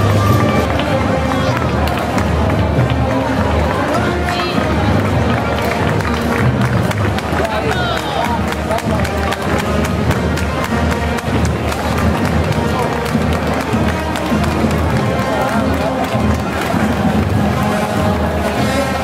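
Parade band music with crowd chatter over it.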